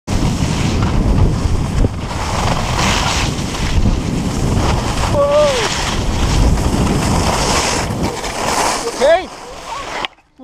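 Wind buffeting the microphone, with skis scraping and hissing over packed snow in swells during a fast downhill run. A brief voice call comes about five seconds in and another around nine seconds in, after which the rushing noise drops away as the skiing stops.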